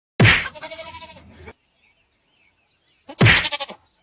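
A goat bleating twice: a longer call that starts loud and trails off in a wavering tone, then after a silent pause a shorter, similar call.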